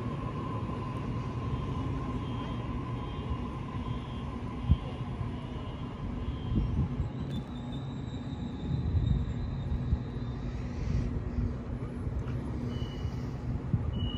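Sydney Trains double-deck electric train slowing to a stop at a platform, its motor whine sliding down and fading over a steady low rumble, with a single sharp knock partway through. After it stops a steady high tone sounds for a few seconds, and near the end come short high beeps as its doors open.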